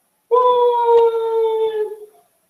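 Whiteboard eraser squeaking as it is dragged across the board: one steady squeal that starts a moment in, sags slightly in pitch and stops just before the end.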